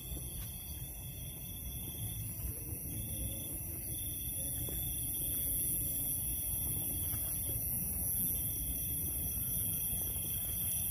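Night insects trilling steadily in several high-pitched continuous tones, with faint footsteps and rustling underneath as someone walks through dry grass.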